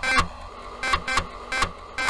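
Electronic sound effect of an animated channel logo intro: a quick, irregular run of sharp electronic bleeps and clicks over a steady low hum.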